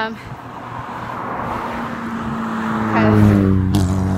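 A car approaching and speeding past close by, its engine and loud exhaust building steadily to the loudest point about three seconds in.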